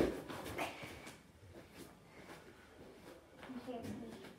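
A thump as a gymnast's hand and feet land on a folding gym mat during a one-handed cartwheel, followed by a few softer thuds and shuffles. A voice is heard briefly near the end.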